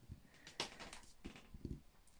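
Faint handling sounds from a clear acrylic stamp block being pressed down onto card: a light rub just after half a second and a few soft low knocks later on.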